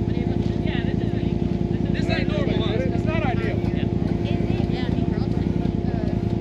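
An off-road vehicle's engine idling close by, a rapid even pulsing under a steady hum, with onlookers' voices in the distance.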